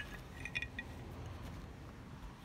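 Light metallic clinks of wood-carving tools, steel blades and metal ferrules knocking together as they are handled: one right at the start, then a quick cluster of three or four about half a second in.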